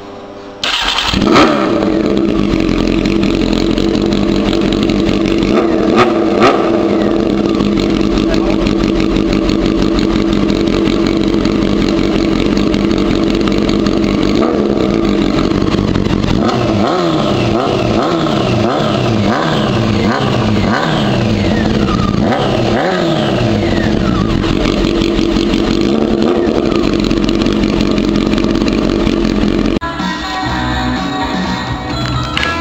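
A 1999 Honda Hornet 600's inline-four engine starts about a second in and idles steadily through an aftermarket silencer. In the second half its throttle is blipped repeatedly, the revs rising and falling.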